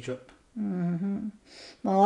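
An elderly woman's voice: a short sound at the start, then a hummed syllable lasting under a second, a breath, and speech resuming loudly near the end.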